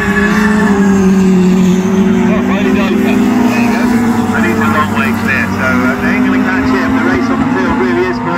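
Autograss racing car engines running hard at high revs, one car passing close by, its engine note held steady with a slight rise about two seconds in.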